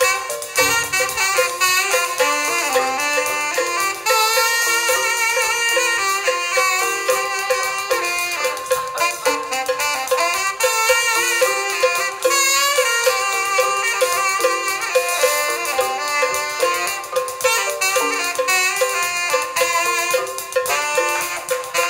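Saxophone playing a lively, quickly moving melody over a band's percussion of hand drums and struck cymbal, in a live Afro-jazz groove.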